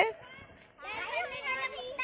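Children's voices chattering, starting about a second in after a short lull.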